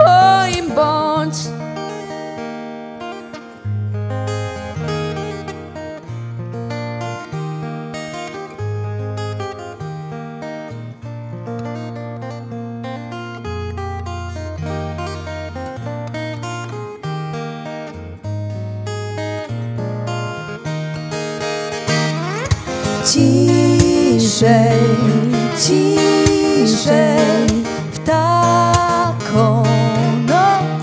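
Steel-string acoustic guitar playing an instrumental passage of single plucked notes over low bass notes. Near the end, women's singing voices with vibrato come back in over the guitar, louder.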